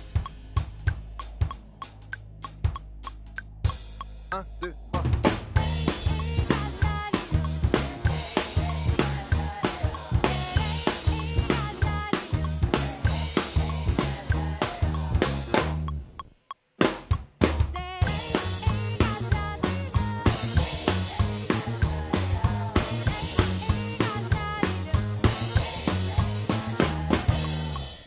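Acoustic drum kit played along with a backing track. For the first few seconds there are scattered hits over a held bass note. Then a steady groove of kick, snare and cymbals sets in, drops out for about a second just past halfway, and picks back up.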